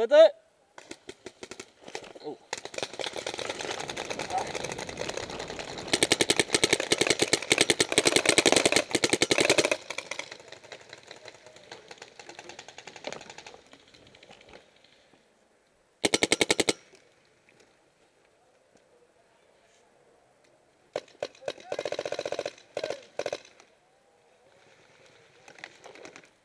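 Electropneumatic paintball markers firing rapid strings of shots. A long run of fire builds up and is loudest in the middle. A short burst follows, and another near the end.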